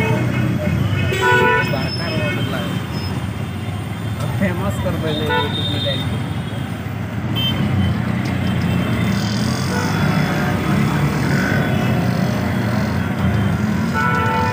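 Auto-rickshaw ride through heavy city traffic: the three-wheeler's engine runs steadily under the general traffic noise. Vehicle horns honk several times, the first about a second in.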